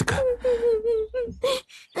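A person crying: drawn-out wailing tones broken by gasping breaths, stopping short about a second and a half in.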